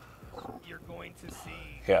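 Quiet voices murmuring in the background, well below the main commentary. A man starts to say "yeah" right at the end.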